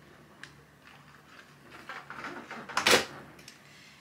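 Soft rustling of cotton quilt fabric being handled on a wool pressing mat, then one sharp knock a little before the three-second mark as the cordless iron is set down.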